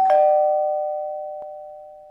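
Two-tone 'ding-dong' doorbell chime: a higher note, then a lower one struck almost at once, both ringing on and fading slowly.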